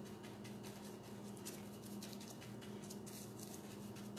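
Faint, irregular soft dabbing of a paintbrush over a napkin laid in wet sealant on a license plate, working out air bubbles, over a steady low hum.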